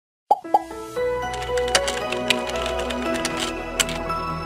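Intro jingle: two quick pops with a falling pitch in the first half second, then light melodic music with held notes and a few bright sparkling clicks.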